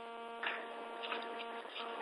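A steady electrical hum with a stack of overtones on the conference-call telephone line, heard in a pause between speakers. It fades out near the end.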